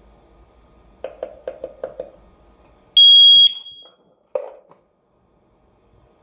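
Wireless red-flash alarm siren: a quick run of small clicks as its SET button is pressed, then one loud, steady, high beep about half a second long, the sign that the siren has entered pairing mode. A single knock follows from the handled plastic housing.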